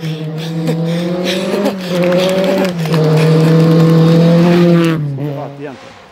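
Rally car engine held at high, fairly steady revs, its pitch dipping briefly about two and three seconds in before the revs drop and it falls away near the end.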